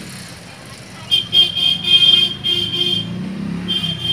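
A vehicle horn sounding a high-pitched, drawn-out note broken into several short pulses, over the low rumble of a running engine; the horn sounds again near the end.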